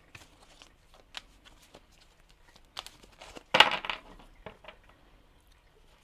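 Oracle cards handled and shuffled by hand: scattered soft card clicks and rustles, with one louder burst of card rustling a little past halfway.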